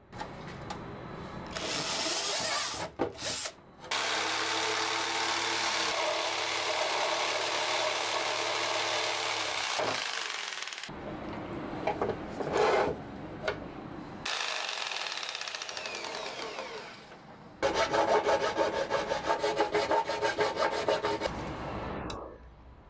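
Jigsaw running and cutting through a hard plastic TV speaker housing in long steady stretches, stopping once midway. Near the end comes a rapid rhythmic scraping, a utility knife scoring the plastic.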